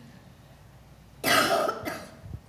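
A person coughing once, a short harsh burst a little past the middle, picked up on a table microphone.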